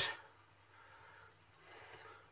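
Near silence after a sentence trails off, with a faint breath from the man about a second and a half in.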